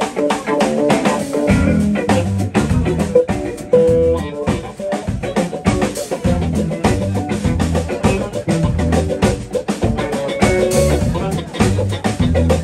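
A live blues band jamming: electric guitars playing over electric bass and a drum kit's steady beat, with a guitar note held briefly about four seconds in.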